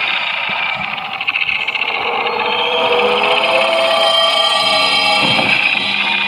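A loud, hissing drone from a film soundtrack, with several steady held tones that come in and grow stronger about halfway through.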